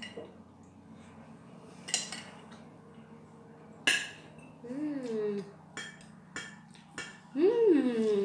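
Metal spoon and fork clinking and scraping on a ceramic plate while eating rice and fish, with several sharp clinks, the loudest about two and four seconds in. Two short falling hums from the eater break in near the middle and at the end.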